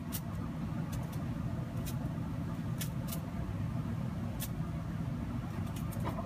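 A steady low rumble runs throughout, with a few faint, sharp ticks scattered over it.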